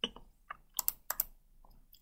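About six short, sharp clicks from a computer keyboard and mouse, coming irregularly, with two quick double clicks in the middle.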